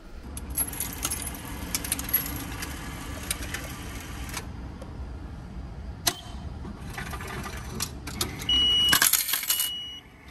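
A train on the Nankai Shiomibashi Line at the platform, with a steady low rumble and metallic rattling and squealing from the wheels and brakes that comes in two spells. Near the end a steady electronic beep sounds several times, loudest just before the end.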